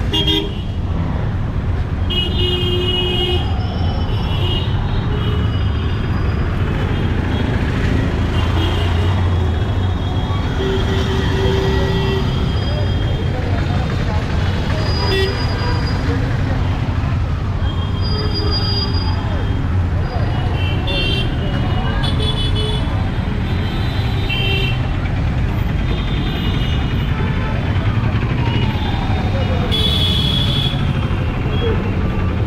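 Busy city street traffic: engines running with a steady low rumble, and many short horn toots from the passing vehicles throughout.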